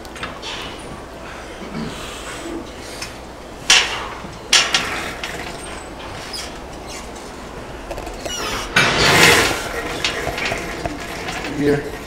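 Chain-driven lat pulldown machine in use: metal clinks and clanks from the drive chain and weight stack as the bar is worked, with two sharp clanks about four seconds in and a louder noisy rush near the nine-second mark.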